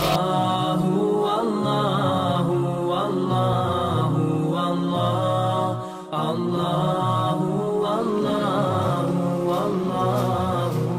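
Chanted vocal music: a voice singing a slow, melodic chant. It breaks off briefly about six seconds in, then carries on.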